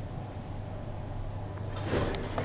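Schindler elevator car travelling: a steady low hum, with a brief swell of noise near the end.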